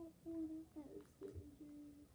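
A young girl's closed-mouth humming whine: several short, held, wavering notes, the last one longer. It is pretend crying voiced for a sick doll.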